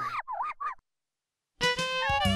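A high, warbling, voice-like sound whose pitch wobbles up and down stops short less than a second in. After a moment of silence, a sparkling chime with a falling glide starts near the end.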